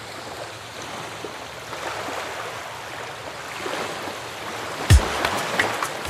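Sea waves surging and receding in slow swells. About five seconds in, a loud deep thump marks the start of the music.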